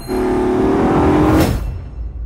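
A car engine revving with a slightly rising pitch under a rush of noise, starting suddenly and fading out after about a second and a half.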